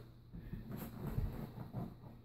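Faint shuffling and a few soft thuds of hands and feet on an exercise mat as a person gets down into a plank position.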